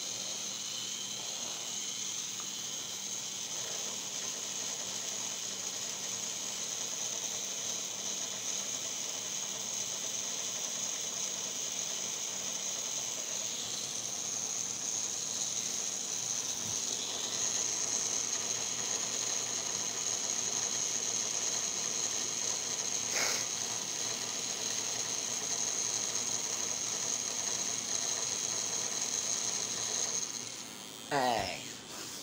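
A small battery-powered toy spider's motor and gears whirring steadily as it crawls, with a high-pitched whine over a faint low hum. There is one sharp click about 23 seconds in.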